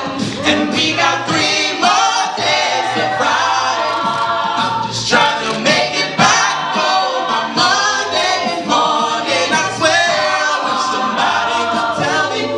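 Mixed a cappella choir singing in several parts, with a male and a female lead voice over the backing and vocal percussion keeping a steady beat.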